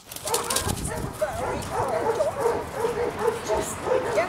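Several dogs whining and yipping in short, overlapping calls that rise and fall in pitch.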